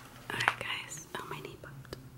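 A woman whispering softly, with light rustling as a fabric car-seat cover is handled.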